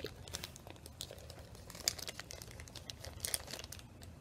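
Small clear plastic bag crinkling as it is handled in the fingers, in scattered crackles with a denser bunch about three seconds in.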